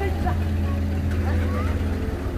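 Citroën car's engine running with a steady low hum as the car drives slowly past close by.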